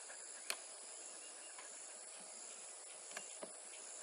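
Hive tool prying a wooden frame loose in a beehive box: a sharp click about half a second in and a fainter one about three seconds in, over a steady high-pitched chirring of insects.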